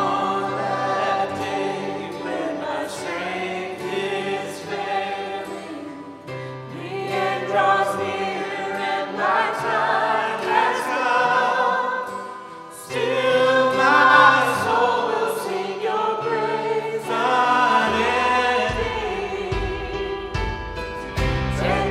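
A church worship team singing a contemporary worship song in several voices, accompanied by acoustic guitar and sustained low bass notes. The singing dips briefly a little past halfway, then comes back louder.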